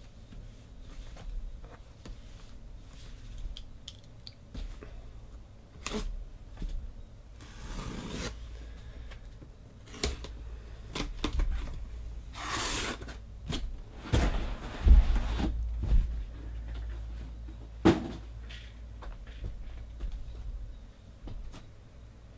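A taped cardboard shipping case being opened by hand: a run of small clicks and scrapes of cardboard, with longer rasps about 8 and 13 seconds in, then dull thumps as the boxes inside are moved and set on the table.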